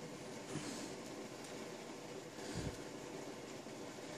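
Faint steady room hiss, with a couple of soft, faint handling sounds as needle and thread are drawn through seed beads, including a dull low bump a little past the middle.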